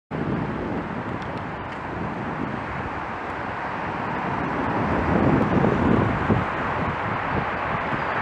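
Wind buffeting a camera microphone on a moving rider, a steady rushing noise that turns louder and gustier about five seconds in.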